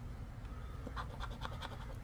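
A poker-chip-style scratcher scraping the coating off one number spot of a scratch-off lottery ticket, in a run of short faint strokes near the middle.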